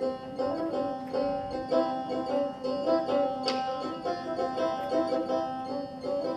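Persian tar playing quick runs of plucked notes in dastgah Chahargah over steady held tones, with a sharp bright accent about three and a half seconds in.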